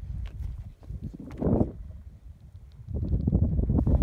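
Wind buffeting the microphone in irregular low rumbling gusts, with a brief stronger gust about a second and a half in and heavier buffeting from about three seconds on.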